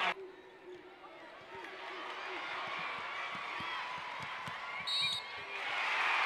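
Basketball being dribbled on a hardwood court, a run of bounces a few tenths of a second apart, over the low murmur of an arena crowd. A short high-pitched squeak comes about five seconds in.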